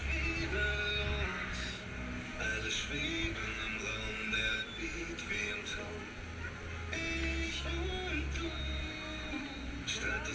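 Music with a heavy bass line played over a fairground ride's loudspeakers.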